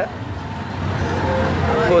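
Street traffic: a steady low engine rumble with road noise from cars. Faint voices come in toward the end.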